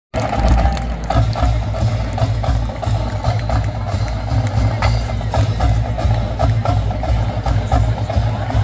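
Marching band drumline playing a cadence: sharp drum and rim hits over a deep pulsing bass drum.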